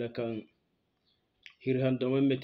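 A man's voice chanting the same short syllable over and over, stopping about half a second in and starting again near the end, with a single short click in the pause.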